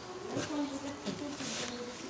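Indistinct chatter of young voices, no words clear.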